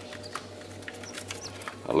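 Newly hatched quail and chicken chicks peeping: a few short, faint high peeps over a steady low hum.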